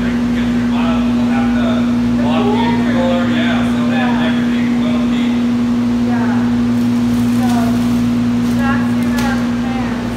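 Steady low electrical hum of warehouse refrigeration equipment, with faint voices talking over it.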